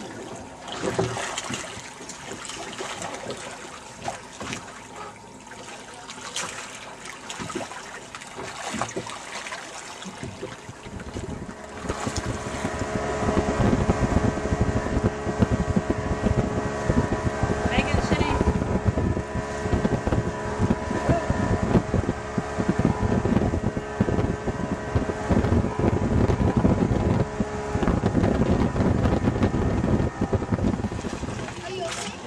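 Water splashing and lapping beside a boat for the first part. Then, from about twelve seconds in, a motorboat under way with a Yamaha 150 outboard: a steady engine drone under loud wind on the microphone and water rushing past the hull.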